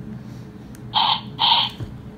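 Baby Alive Sweet Tears doll's built-in electronic speaker giving two short noisy sounds about half a second apart, its response to being fed from its juice bottle. The sound is thin and cut off in the treble, like a small toy speaker.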